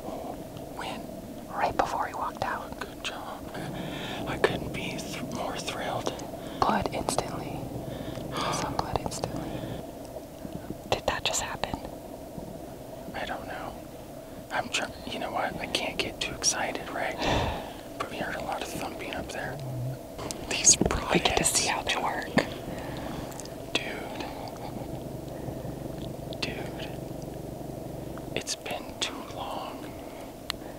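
A man whispering, quietly talking in short phrases.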